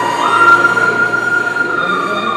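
Loud held high-pitched tones from the play's soundtrack: the note jumps up a step a fraction of a second in, holds, then slides back down near the end.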